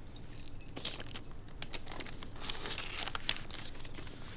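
Soft rustling with many small, sharp clicks and ticks scattered through it: the handling noise of clothing, books and a binder as people move close together.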